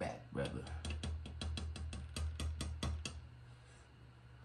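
A rapid run of sharp clicks and taps, several a second, over a low steady hum; the clicks stop about three seconds in.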